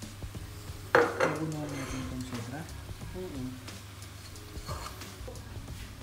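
Plastic spatula stirring sliced mushrooms and spring onion in a pot and knocking against it, with one sharp knock about a second in and smaller knocks after.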